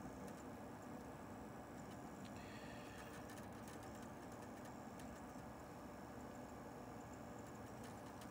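Faint steady whir with a few light ticks from a strawberry iMac G3's CD-ROM drive spinning and seeking while it boots from a CD. The drive's spindle has just been greased with white lithium grease, and it sounds better.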